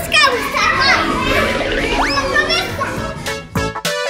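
Children's voices, excited talk and squeals at play, with one rising squeal about two seconds in. Background music with a regular beat comes in near the end.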